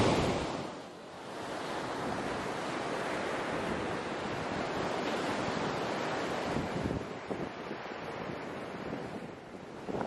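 Ocean surf breaking and washing up a sandy beach: a steady rush of waves.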